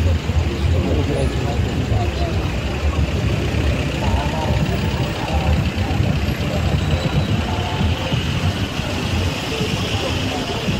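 City street traffic, with cars driving past and engines running steadily, mixed with the voices of passers-by talking.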